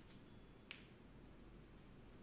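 Snooker balls clicking: a faint click right at the start, then one sharp, brief click of ball striking ball less than a second in, after the cue ball has been struck.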